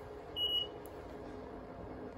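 JR West SG70 simple IC card reader giving one short high beep about half a second in as it accepts a touched IC card for a normal exit and deducts the fare.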